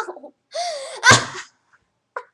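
A person's sneeze-like vocal burst: a wavering, drawn-out 'ah' that ends about a second in with a sharp, explosive burst.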